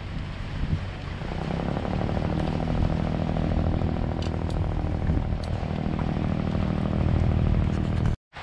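A small engine running steadily at an even pitch, louder from about a second and a half in.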